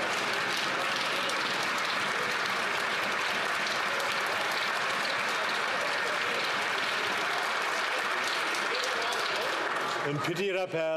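Many people in a large chamber applauding steadily, a dense sound of clapping hands with voices mixed in.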